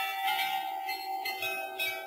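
Bell-like chimes, several struck notes about half a second apart ringing over a held tone, as a short musical opening.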